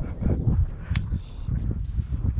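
Wind buffeting the microphone, an uneven low rumble, with a single sharp click about a second in.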